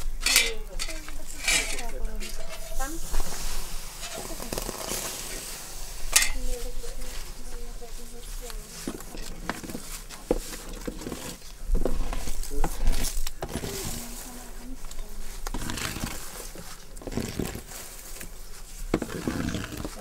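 Metal fire rake scraping and clinking over glowing embers and ash on the floor of a clay bread oven, in irregular strokes. Coals are dragged about, with sharp clinks among softer scrapes.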